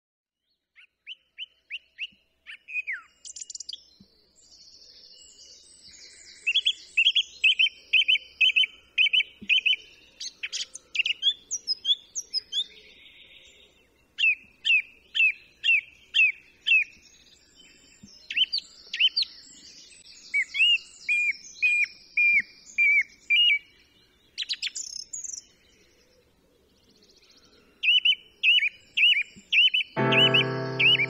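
Songbirds singing: repeated phrases of quick, sharp, high notes, each phrase a second or two long, with quieter high twittering between them.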